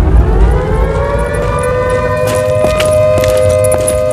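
A siren winding up, its pitch rising over the first two seconds and then holding a steady wail, with a deep rumble underneath fading out in the first second. Scattered sharp clicks join it from about halfway through.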